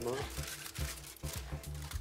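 A sheet of aluminium foil crinkling as it is handled and pulled back, over soft background music.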